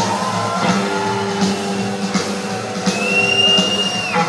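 Live rock band playing a blues-boogie number on electric guitar, bass and drums, heard from within the audience, with a steady drum beat under it. Near the end a high lead-guitar note is held and then bent down as it stops.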